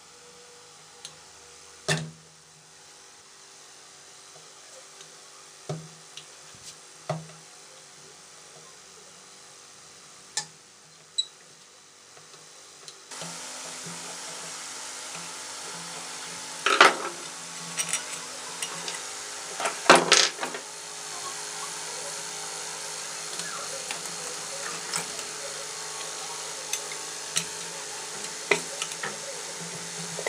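Metal screwdriver and rod knocking, clicking and scraping against a ceiling fan motor's metal housing as its cover is pried open, in scattered strokes with two louder scrapes past the middle. A steady background hum runs underneath and grows louder partway through.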